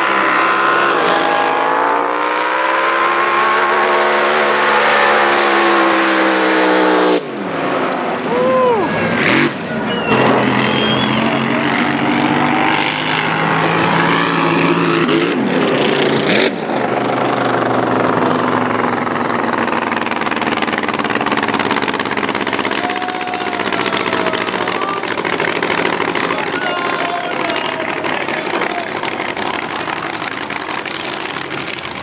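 Supercharged, fuel-injected alcohol drag boat engine running hard through a pass. Its pitch climbs for the first few seconds and then falls. The sound breaks off sharply about seven seconds in and changes abruptly again around sixteen seconds, then carries on steadily.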